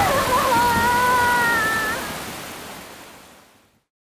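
Heavy rain and rushing water, a dense steady hiss. Over the first two seconds a high, drawn-out wailing tone sounds above it. Everything fades out to silence shortly before the end.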